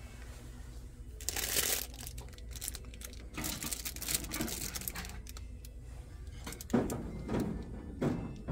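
Rustling handling noise in a few bursts, then a single sharp clink about three-quarters of the way in as an early redware dish is lifted off a stack of ceramic plates.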